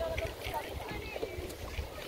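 Indistinct voices of people nearby, with wind rumbling on the microphone underneath.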